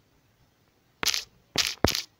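Smartphone on-screen keyboard key presses: three quick, short clicks about a second in, each sharp at the start.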